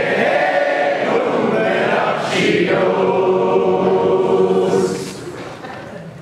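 Unaccompanied male voices singing long held notes in harmony: one sustained phrase, a short break about two seconds in, then a second held chord that fades near the end.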